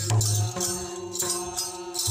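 Bhailo folk music: voices hold a steady, chant-like line over madal hand drums beaten in a repeating rhythm.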